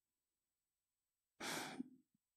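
Near silence for over a second, then one short audible breath by a man about to speak, about half a second long.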